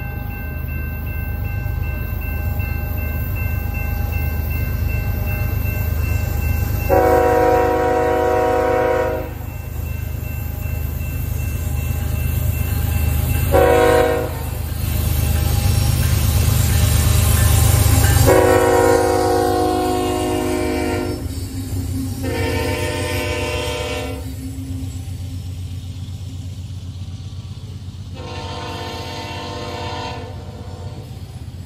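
Freight train's diesel locomotives approaching and passing, their engine rumble building to loudest just past halfway and then giving way to the rolling noise of the hopper cars. The lead locomotive's air horn sounds five times, four longer blasts and one short blast.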